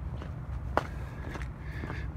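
Footsteps on wet, slushy pavement and gravel: a few distinct steps roughly every half-second or so, over a steady low rumble.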